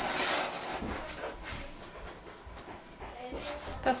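Hands brushing and patting floured bread dough in a rattan proofing basket: a soft rustling and scraping, loudest in the first half-second, then fainter strokes.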